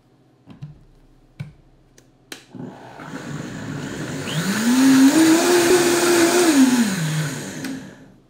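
Countertop blender pureeing simmered barbecue sauce. After a few light clicks as the lid goes on, the motor starts about two and a half seconds in; its whine climbs in pitch as it speeds up, holds steady, then falls as it slows, and it stops near the end.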